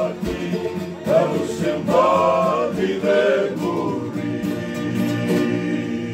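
A group of men singing together in harmony, accompanied by a strummed acoustic guitar.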